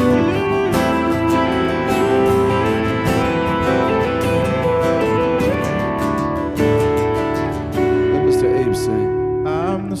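Instrumental break of a live country song: an electric guitar plays a lead line with bent notes over strummed acoustic guitars.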